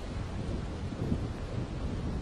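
Wind buffeting the microphone as a steady low rumble, over ocean surf washing and foaming around rocks below.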